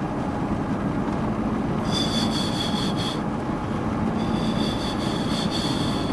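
Windscreen wiper blades squeaking as they rub across the wet glass, in two sweeps (about two seconds in, and again from about four seconds), over the steady rumble of the car driving.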